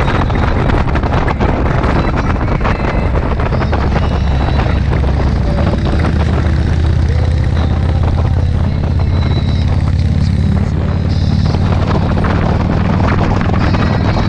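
Motorcycle engine running steadily at cruising speed, a low hum slightly stronger in the middle, with wind buffeting the microphone.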